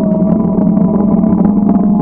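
Steady, loud vehicle engine hum with a few held tones over road noise, even throughout.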